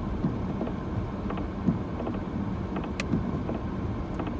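Steady low rumble of a car's engine and road noise heard inside the cabin while driving, with a single faint click about three seconds in.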